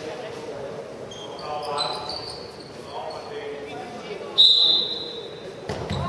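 A referee's whistle blown once in a short, sharp blast about four and a half seconds in, ringing in a large echoing sports hall over players' voices calling.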